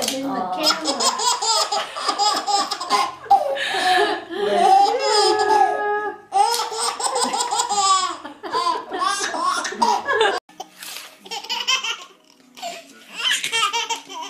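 A baby laughing hard in long runs of belly laughs. About ten seconds in the laughter cuts off suddenly, and a few quieter, shorter laughs follow.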